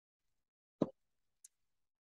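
Silence broken by one short pop just under a second in, followed by a faint high tick about half a second later.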